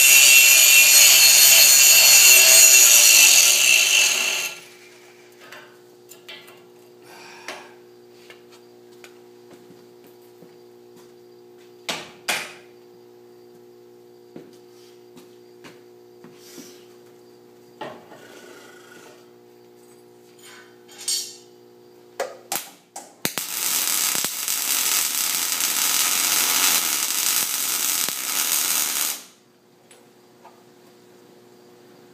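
Handheld angle grinder grinding steel pipe, cutting off about four seconds in. A steady low hum follows, with scattered clanks of steel being handled. About 23 seconds in comes a steady six-second run of MIG welding on the steel frame.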